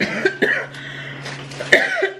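A woman coughing into her fist, several sudden coughs with the loudest one near the end.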